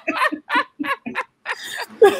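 A woman laughing in a run of short, quick bursts.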